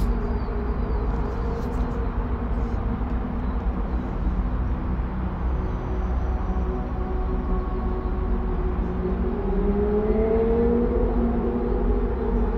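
Steady low background rumble with a few faint held tones; one tone rises near the end.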